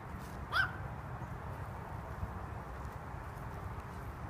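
One short call from an animal, rising in pitch, about half a second in, over a steady low outdoor rumble.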